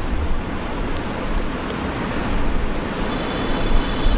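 Steady hiss with a low rumble: background noise of the recording, with no voice or distinct event in it.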